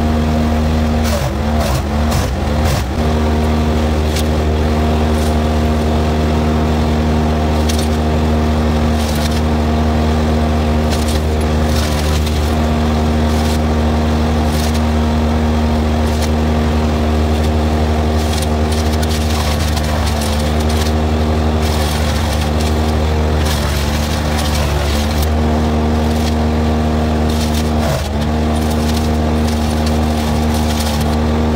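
Trailer wood chipper's engine running steadily at high speed, its pitch sagging briefly a few times as limbs and brush are fed in and load it down, with scattered cracks and knocks from the material going through. The mini skid steer's engine runs alongside.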